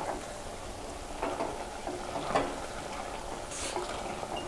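A spatula stirring pork pieces and masala in a metal pressure cooker pot over a low, steady sizzle of frying, with a few scrapes against the pot about a second apart.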